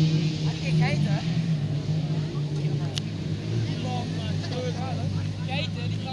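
Autocross race car engines running steadily as small hatchbacks lap a dirt track, a continuous drone with a small shift in pitch about four seconds in. Faint voices sound over it, and there is a single click about halfway through.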